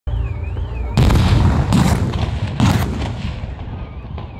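Three explosive charges going off, the first about a second in and the others at roughly one-second gaps, each followed by a long low rumble that dies away.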